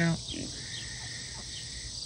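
Steady outdoor insect chorus of crickets, a continuous high trill, with a thin steady tone joining it about half a second in.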